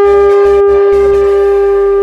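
Conch shell (shankha) blown as a horn, holding one long, steady note.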